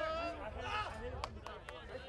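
Several people on the sideline chatting at once, overlapping and unclear, with a few sharp knocks a little past the middle.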